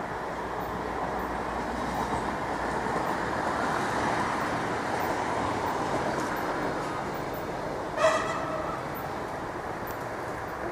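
A train running past: a steady rumble of wheels on rails that swells towards the middle and slowly fades. A short, sharp pitched sound cuts in about eight seconds in.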